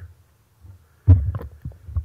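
Low thumps and soft knocks picked up close on a microphone: one loud bump about a second in, then a few smaller ones.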